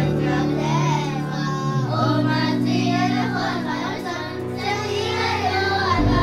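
Children singing over musical accompaniment with sustained low notes.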